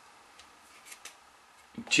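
A few faint, light clicks and scrapes from a wooden application stick working melted gelatin in a small container. A man's voice starts right at the end.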